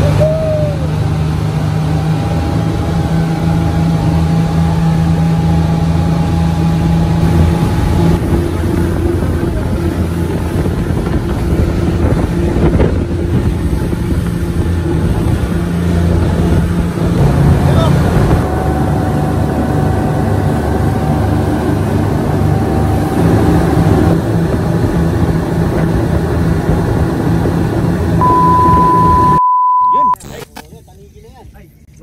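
Fishing boat's engine running under way, a loud steady drone whose note shifts a few times. Near the end a steady test-tone beep of about a second and a half, which then cuts off abruptly.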